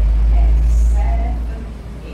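A loud, deep rumble, swelling through the first half and easing off toward the end.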